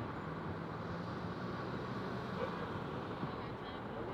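Steady background traffic noise from a nearby road, with a faint low engine hum.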